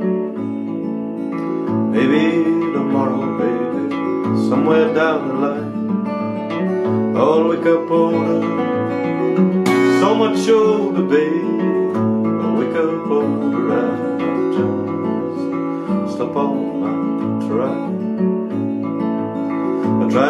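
Steel-string acoustic guitar played fingerstyle with a capo: a steady picked accompaniment with a bass line under melody notes.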